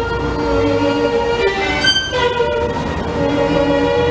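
Solo violin playing long bowed notes, often two at once as double stops, with a brief high note about two seconds in.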